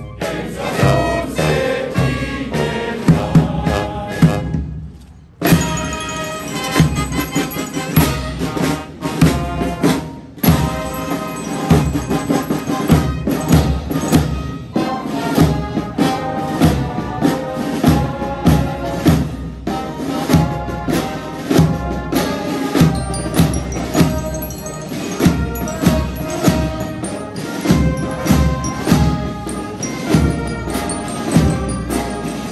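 Military marching band of brass and drums playing a march with a steady drumbeat. It breaks off briefly about five seconds in, then strikes up again as the band marches.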